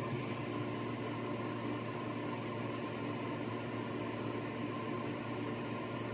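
Steady background room noise: a low hum under an even hiss, with no distinct sounds.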